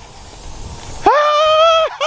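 A man's long, high-pitched excited shout, held at one pitch for most of a second, starting about a second in. Before it, a low rumble with hiss builds up.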